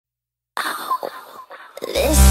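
Opening of an electronic dance remix: about half a second of silence, then a short, noisy intro sound with a few sharp clicks, ahead of the beat.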